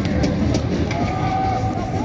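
Ice rink noise just after a goal: a steady low rumble of the arena, with one held note lasting about a second in the middle.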